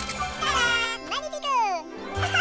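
A cartoon sparkle sound effect: a tinkling jingle that sweeps up and then down in pitch over a held musical chord, marking the reveal of a finished topiary.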